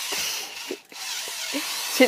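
Green hand-held electric drill with a long bit running, a steady whirring hiss that breaks off briefly just before a second in and then starts again.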